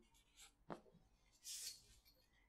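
Near silence with faint felt-tip marker sounds on a paper flip chart: a single short tick a little before one second in, then a brief soft hiss about one and a half seconds in.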